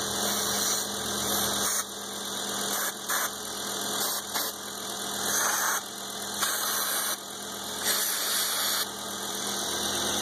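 Car engine idling steadily while brake parts cleaner is sprayed from an aerosol can in repeated short bursts of hiss around the intake manifold gasket. The idle does not change, a sign that there is no intake or vacuum leak there.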